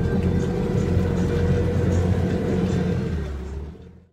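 Boat engine running with a steady low rumble, fading out just before the end.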